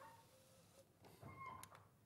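Near silence: room tone, with a faint brief sound past the middle.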